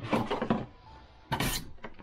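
Cardboard boxes being handled, with a short rustle about one and a half seconds in.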